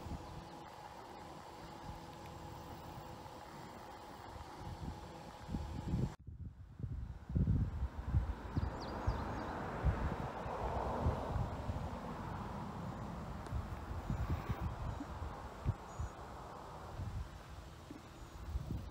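Quiet outdoor background with a faint steady hum. About six seconds in it breaks off, then gives way to irregular low buffeting of wind on the microphone, with rustling as the camera moves.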